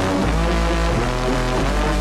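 Background music: an instrumental passage with sustained chords over a steady low bass, without vocals.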